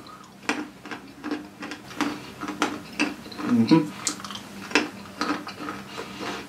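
Crunchy coconut-cream-coated peanuts being chewed close up: a run of irregular crisp crunches and clicks.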